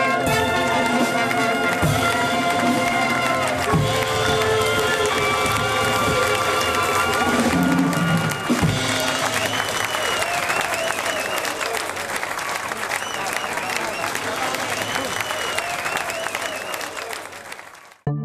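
Live jazz band with trumpet, saxophone and a woman singing, the music ending about eight seconds in, followed by an audience applauding and cheering that fades out near the end.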